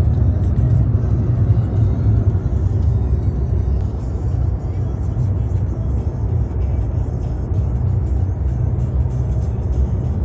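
Steady low road and engine rumble inside a moving car at highway speed, with music playing over it.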